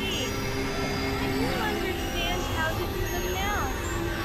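Experimental electronic noise music: steady synthesizer drones over a dense low rumble, with short sliding and warbling tones, one falling slide near the end.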